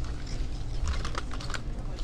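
Hanging plastic-and-cardboard blister packs of press-on nails being flipped through by hand on metal peg hooks, giving a few scattered light clicks and rattles over a low steady hum.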